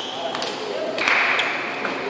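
Table tennis ball being hit back and forth: several sharp clicks of ball on bat and table during a rally, with voices in the hall.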